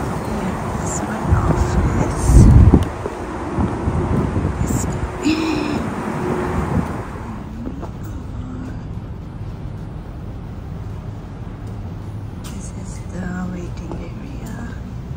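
Outdoor street noise with passing traffic and rumbling knocks while walking. About seven seconds in it drops to quieter indoor room tone, with faint voices near the end.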